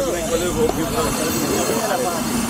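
Several people talking indistinctly over a steady low rumble.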